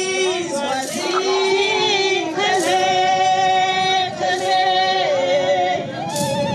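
Women's voices singing a song in long held notes that slide from one pitch to the next.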